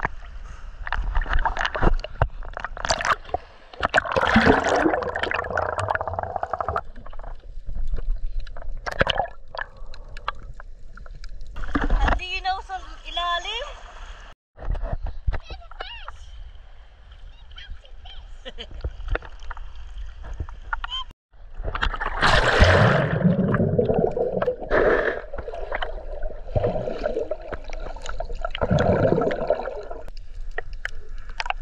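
Sea water sloshing and splashing around a GoPro in its waterproof housing, heard muffled through the case, with muffled voices in several places.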